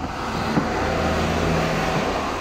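Steady low hum and rushing noise of a car running, heard from inside its cabin.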